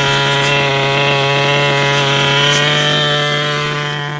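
Small two-stroke glow-fuel nitro engine of a Tamiya TNS-B RC car, running at high revs with a steady buzzing pitch that creeps up slightly and eases off a little near the end. The engine is still being broken in and is not yet tuned.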